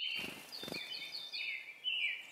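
Several small songbirds chirping and calling over one another, with a quick run of short high chirps about a second in. Two soft low thumps come near the start.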